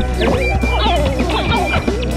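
Live band music: guitar lines with sliding, wavering notes over a steady bass and repeated drum hits.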